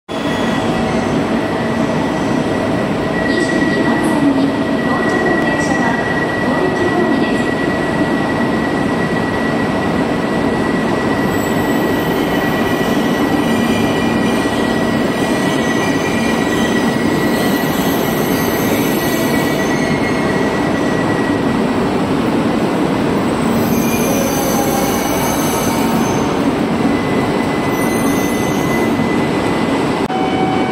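E2-series Shinkansen train running into an underground station platform and slowing to a stop, with a steady high whine over the train's running noise.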